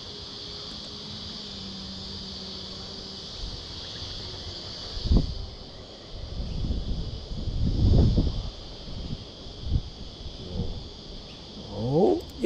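A steady, high-pitched drone of insects calling. About five seconds in, and again in the second half, it is joined by low rumbling gusts of wind on the microphone.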